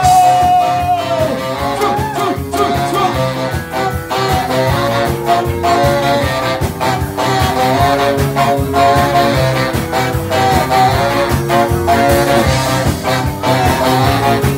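Live ska band playing loudly: a saxophone section with a baritone sax carries the melody over electric guitars and a steady drum beat.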